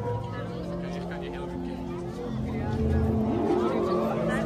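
Voices of an outdoor crowd over sustained low musical tones from the performance's soundtrack, getting louder about halfway through.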